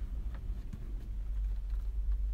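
Steady low rumble with a few faint clicks and taps.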